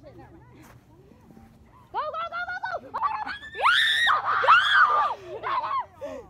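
Excited shouting and screaming from people urging a runner on, starting about two seconds in and loudest in the middle.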